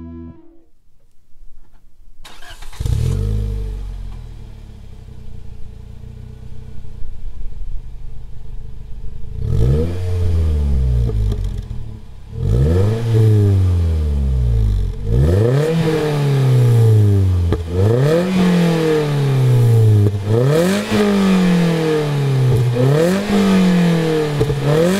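Toyota Vitz GR Sport's 1NZ-FE 1.5-litre four-cylinder engine breathing through an HKS Silent Hi-Power muffler. It starts up about two seconds in, with a quick flare that settles into a steady idle. From about ten seconds in it is blipped repeatedly, the revs rising and falling back every two to three seconds.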